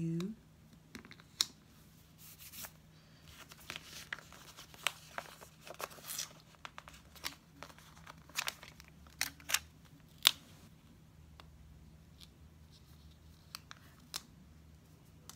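Paper stickers being peeled from their backing sheet and handled and pressed onto a planner page: scattered crinkles, rustles and light taps, busiest in the first ten seconds and sparse after.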